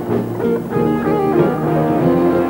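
Live band music led by guitar.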